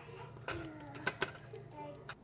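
A small child babbling and cooing in short, wordless sounds, with a few sharp knocks of a wooden spoon against the pot as food is served.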